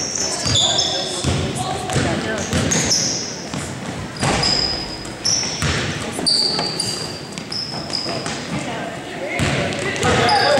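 Basketball game sounds echoing in a large gym: a basketball bouncing on the hardwood and sneakers squeaking in short high squeals, over indistinct voices.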